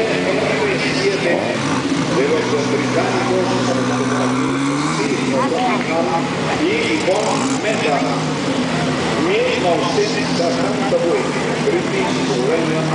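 Historic rally car engines idling steadily, with one engine rising in pitch for a couple of seconds about two seconds in as a car creeps forward. Talking runs over it throughout.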